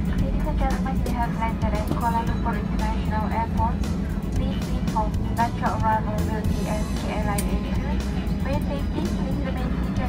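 Crew announcement over the aircraft's cabin PA, thin and narrow-sounding, over the steady low hum of an Airbus A320 cabin as the plane taxis after landing.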